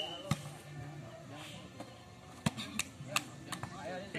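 Volleyball being hit by hands and arms during a rally: a few sharp slaps, the loudest about a third of a second in and again around two and a half and three seconds in, over background voices of players and onlookers.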